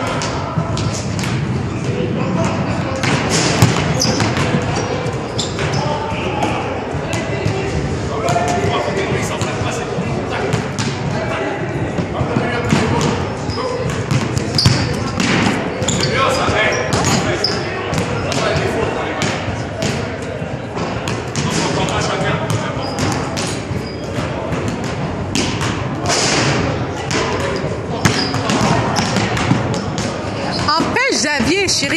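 Basketballs bouncing on a hardwood gym floor in a large hall, many short thuds throughout, with people talking in the background.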